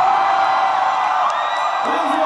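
A voice holds one long high shout-like note over crowd cheering while the band's beat drops out.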